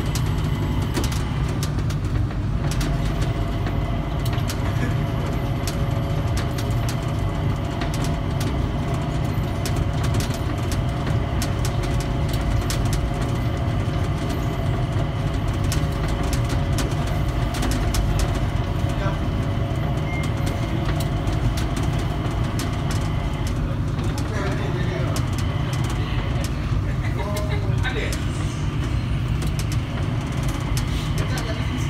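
Rubber-tyred automated people mover (Mitsubishi Crystal Mover) running along its guideway, heard from inside the car: a steady low rumble with a constant motor whine of several held tones, and frequent small clicks and rattles.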